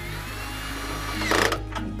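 Cordless drill with a nut-driver fitting spinning a wing nut down onto an aluminium storm shutter. The motor whines, and a loud burst near the end comes as the nut is driven tight. Background music plays underneath.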